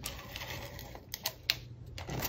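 A handheld tape-runner adhesive applicator drawn along cardstock, laying adhesive with a faint scratchy rolling sound and a few sharp clicks about a second in.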